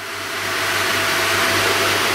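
Air-assist jet hissing onto an acrylic block on a CO2 laser bed, keeping the block from catching fire while the laser fires into it. The hiss swells over about the first second, then holds steady.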